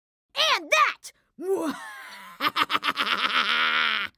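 A voice making wordless sounds: two short grunts, another about a second and a half in, then a long, fast-pulsing, buzzing cry from just past the middle to the end.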